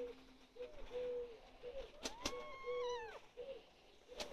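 A cat gives one long meow about two seconds in, rising, holding and falling away. Behind it a pigeon coos repeatedly.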